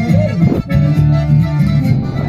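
Live band music led by bandoneóns playing held chords, with electric bass and acoustic guitar underneath, coming through the stage PA.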